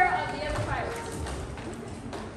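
Voices from a stage performance, with a few hollow low knocks in the first second and a half as the child cast moves about the stage.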